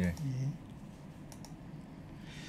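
A short spoken "예", then a couple of faint clicks from operating a laptop, about a second and a half in, as the spreadsheet on screen is scrolled.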